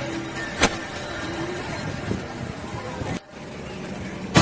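Street traffic ambience, with cars passing on the road. There is a sharp click about half a second in, and the sound drops out briefly near the end.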